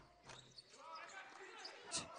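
Faint court sound of a basketball game in a large, sparsely filled arena: the ball bouncing on the hardwood and players' voices in the distance, with one sharp knock near the end.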